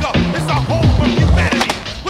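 Hip hop music over the sound of a skateboard: wheels rolling on concrete with a few sharp board clacks.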